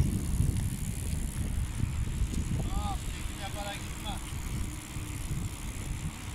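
Wind buffeting a phone's microphone while riding a bicycle: a steady, uneven low rumble, with a few faint voice sounds in the middle.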